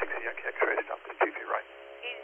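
A voice speaking over air traffic control VHF radio, thin and narrow like a telephone line.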